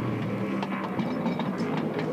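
Pit-lane racket during a race car wheel change: a low steady engine hum with a scatter of short clicks and clanks from the crew's wheel work.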